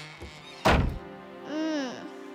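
A loud cartoon thud about two-thirds of a second in, over soft background music, followed near the end by a short pitched sound that rises and falls.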